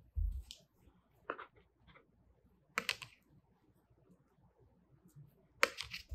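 A soft bump and a few light scattered clicks of handling, then near the end a quick run of sharp taps as a stencil brush is dabbed into acrylic paint on a plate palette.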